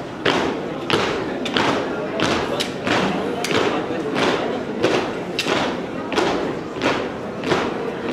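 Marching feet stamping in unison on a hard floor, a heavy, regular beat of nearly two steps a second with a short echo after each stamp.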